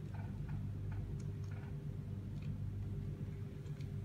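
Faint small clicks and ticks of the metal parts of an e-hookah pen being handled and twisted in the fingers, a few in the first two seconds and a couple more later, over a steady low hum.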